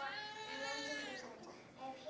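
A child's voice held on one long drawn-out vowel for about a second and a half, fading away.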